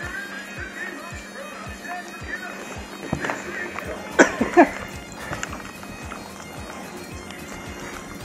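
Celtic-style background music with bagpipes over a steady drum beat. A brief loud burst of voice cuts in about four seconds in.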